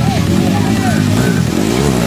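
Dirt bike engine revving up and down as it climbs a dirt trail, with spectators' voices shouting and background music mixed in.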